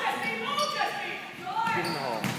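Basketball game sounds in a gym: players and spectators calling out, mixed with sneakers squeaking on the hardwood court during a scramble under the basket.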